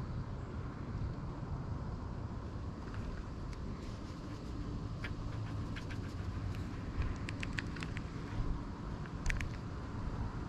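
Steady low rumble of wind buffeting the microphone, with a few faint scattered clicks.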